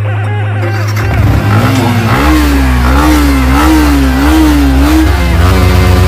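Motorcycle engine starting about a second in and then revved in repeated throttle blips, its pitch rising and falling about four times, with background music underneath.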